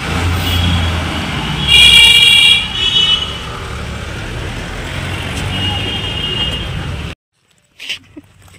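Road traffic noise with a vehicle horn honking for about a second some two seconds in, then more faintly twice more; the sound cuts off suddenly about seven seconds in.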